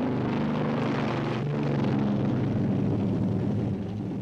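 Aircraft engines droning steadily, with several low pitches over a rushing noise; the pitches shift slightly about one and a half seconds in.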